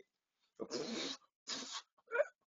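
Two short breathy puffs of a man's voice, the first about half a second in and the second shortly before the end.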